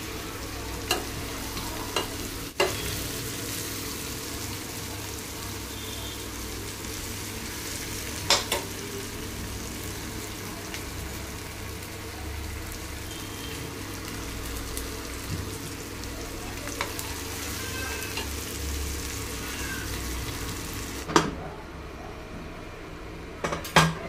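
Chicken leg pieces frying in masala in a stainless steel pan, sizzling steadily while a perforated steel spoon stirs them, with a few sharp clinks of the spoon against the pan. The sizzle falls away about three seconds before the end, followed by a couple of knocks.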